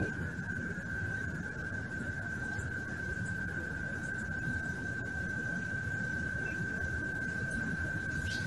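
A steady high-pitched tone, one constant pitch without a break, over a low background hiss and rumble from the audio feed.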